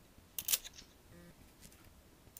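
A stack of pennies set down on a folded index-card bridge: two quick sharp clicks of the coins about half a second in, then a few fainter ticks.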